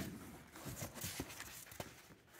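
Unpacking noise: a foam packing piece lifted out of a cardboard box, with a sharp knock at the start, then scattered light knocks and rustles of foam against cardboard.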